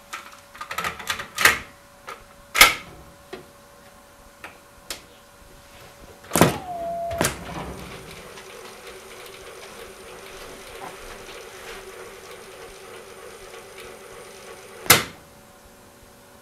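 Cassette deck of a Mars JR-600 boombox: a run of clicks and clunks as a tape goes in and keys are pressed, then a loud clunk and about seven seconds of the tape winding at speed with a steady whine, cut off by a sharp clunk as the track search stops.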